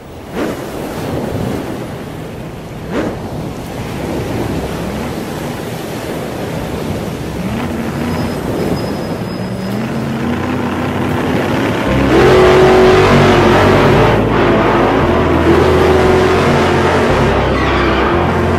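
Cartoon car engine sound effects: engines revving, one note rising in pitch, over a steady rush of noise as the cars speed off. About two-thirds of the way in, music with a stepped bass line comes in under it.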